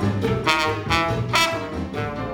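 Trombone solo over a jazz big band's accompaniment, with two bright, sharply attacked notes, one about half a second in and another just past halfway.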